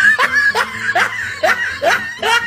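A person laughing in a run of about five short, rising 'ha' pulses.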